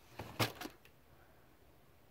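A few light clicks and knocks, the loudest about half a second in, as a dresser drawer full of toys is pulled open and its contents shift.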